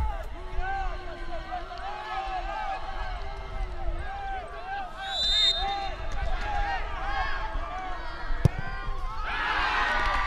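Men's voices calling out across an open football pitch. About halfway through comes a short, high whistle blast. About a second and a half before the end there is a single sharp thud as the penalty kick is struck, followed by louder shouting.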